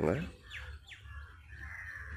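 Birds calling: a crow's caw ends just at the start, then small birds chirp faintly with a few short falling chirps and a thin, higher held call near the end.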